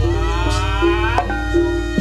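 Gamelan accompaniment to a wayang kulit performance: short struck notes, with a long drawn-out note gliding upward over the first second or so before it breaks off.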